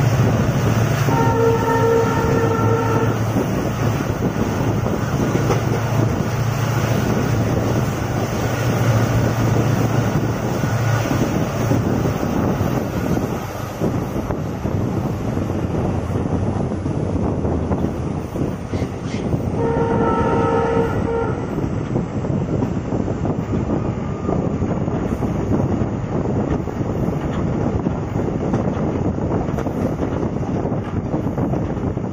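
Express passenger train running, its wheels rumbling and rattling steadily on the track, heard through an open coach window. The locomotive horn sounds twice in chords of about two seconds each: once just after the start and again about twenty seconds in.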